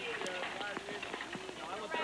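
Hurried footsteps and the knocking of a hospital gurney being rushed along, with broken snatches of voices over them.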